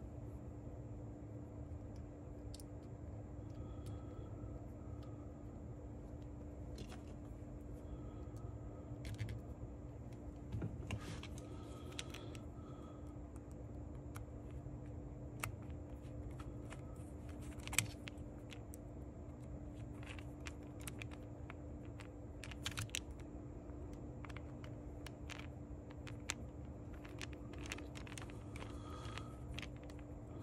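Faint, scattered clicks and light metallic taps from hands and a screwdriver working small brass spacers and a stop ring onto a cassette deck's capstan shaft. One sharper click comes a little past halfway, all over a steady low hum.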